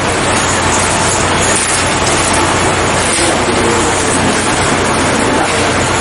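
Prison transport bus engine running steadily: a loud, even noise with a low hum underneath.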